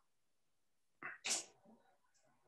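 A pause in the call audio, silent for about a second, then a brief nonverbal sound from a person: a short two-part burst ending in a sharp hiss of breath.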